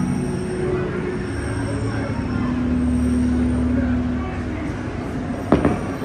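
Fireworks show with its musical soundtrack: held notes over a low rumble, and one sharp firework bang about five and a half seconds in.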